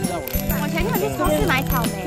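Cheerful background music with a steady beat, with a woman's excited voice talking over it.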